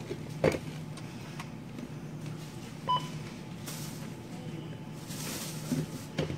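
One short electronic beep about three seconds in, from the checkout's barcode scanner as an item is rung up, over a low steady hum. A sharp click comes about half a second in.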